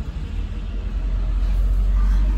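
Low vehicle rumble heard from inside a parked car, swelling toward the end as another vehicle passes close by.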